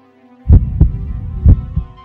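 Heartbeat sound effect: two deep double thumps, lub-dub, about a second apart, loud over a faint sustained backing.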